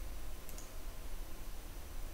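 A single light computer mouse click about half a second in, over faint steady room noise with a low hum.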